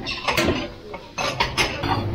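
Several sharp metallic clinks and clatters from a stainless steel chafing dish and its serving utensils being handled at a buffet.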